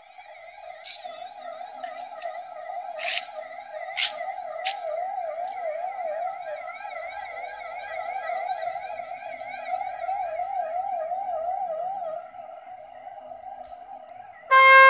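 A steady warbling tone that wavers up and down in pitch, with a fast, high pulsing chirp over it and a few sharp clicks in the first seconds.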